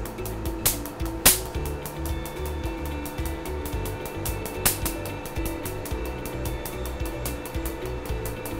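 Q-switched Nd:YAG laser handpiece firing a rapid, even train of pops as its pulses strike the skin, with a couple of louder snaps, over soft background music.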